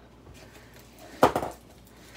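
A large rolled diamond-painting canvas with its plastic cover being handled and unrolled: soft rustling, with one short, sharp sound a little over a second in.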